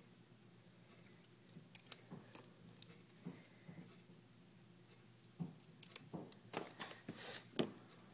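Scissors cutting cardstock: a scattering of faint, short snips, coming quicker and louder in the second half.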